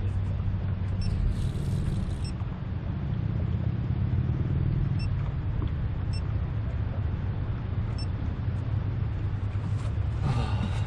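Steady low rumble, with a camera giving several short high beeps as it is switched on, about one, two, five, six and eight seconds in.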